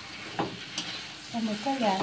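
Squid and salted-egg sauce sizzling steadily in a hot pan while being stir-fried, with a metal spatula knocking against the pan twice in the first second.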